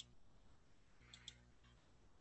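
Near silence with a few faint clicks from working a computer, two of them close together a little past a second in.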